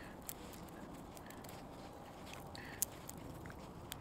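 Dry stinging nettle stalks being split and stripped by hand for their fibres: a few sharp crackles and snaps, the loudest near three seconds in, over a faint steady background.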